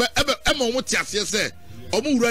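Rapping over hip hop music: a voice delivering rapid, tightly packed syllables.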